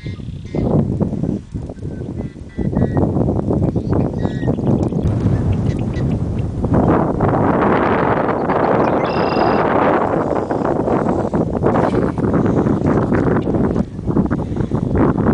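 Strong wind buffeting the microphone in rough gusts, getting heavier partway through. A few brief high-pitched bird calls show through now and then.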